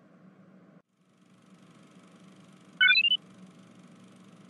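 A short electronic chime: a quick run of beeps stepping up in pitch, lasting under half a second, about three seconds in, over a faint steady background hiss.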